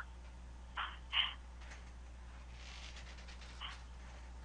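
A pause on a conference-call phone line: a steady low line hum, with two short faint sounds about a second in and one more near the end.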